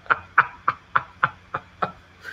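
A man laughing: a run of about seven short, evenly spaced laugh bursts, roughly three a second.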